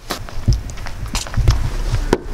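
Handling noise from a handheld camera being carried while walking: low thumps about half a second and a second and a half in, with light clicks and rustling.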